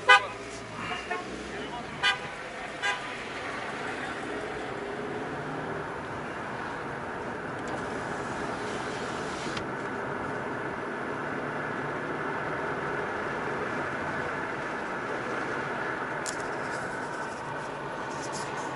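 Car driving along a road, heard from inside the cabin: a steady road and engine noise. In the first three seconds it is cut by four short, loud pitched sounds.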